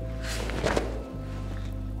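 Background music, and about half a second in a brief swish and soft thud of a karate front kick: the cotton gi snapping and a bare foot setting down on the mat.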